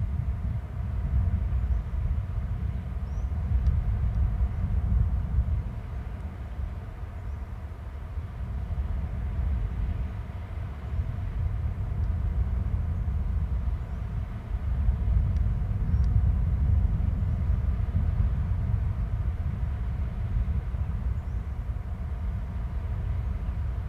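Wind buffeting an outdoor microphone: a low, uneven rumble that swells and eases in gusts. A few faint, short, high chirps come through now and then.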